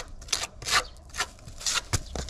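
A small metal putty knife scraping and smoothing quick-setting repair mortar into a crack in a concrete path, about five short rasping strokes. The mortar is already beginning to set.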